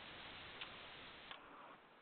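Near silence: the faint hiss of an open conference-call line, with two faint clicks about half a second and a second and a quarter in. The hiss drops away shortly before the end.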